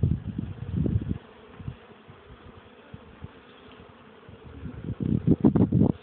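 Honeybees buzzing as they fly close past the microphone at the hive. The buzzing is loud for about the first second, drops to a faint hum, and swells again near the end.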